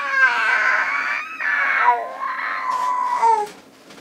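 A baby's voice: long, drawn-out high-pitched calls, broken briefly twice and ending about three and a half seconds in.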